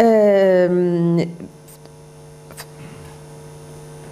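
A woman's drawn-out hesitation vowel into a microphone, held for about a second and sliding slightly down in pitch. It is followed by a steady mains hum from the sound system, with a couple of faint clicks.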